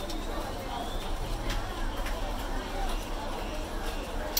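Indistinct background voices chattering, with a few light clicks from handling tools and parts on the workbench.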